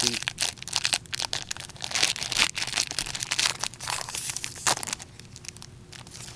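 Foil wrapper of a hockey card pack crinkling and crackling in gloved hands as it is torn open, in quick irregular bursts that die down about five seconds in.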